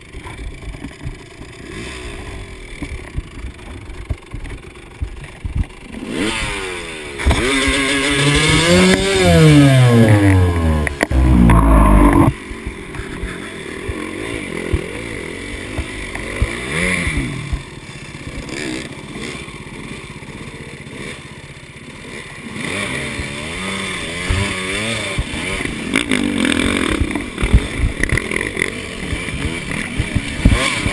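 KTM 200 XC two-stroke enduro bike's engine revving up and down under load. It is loudest between about six and twelve seconds in, cuts back sharply, runs at lower throttle, then picks up again in the last third, with scattered knocks from the bike over rough ground.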